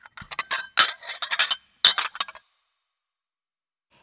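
Plates clinking and rattling together as they are packed: a quick, irregular run of sharp clinks lasting about two and a half seconds.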